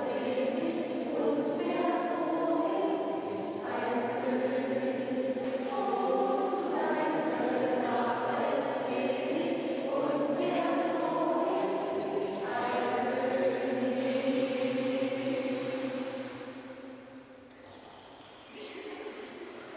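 Choral music: a choir singing long, held notes that change every few seconds, fading out near the end.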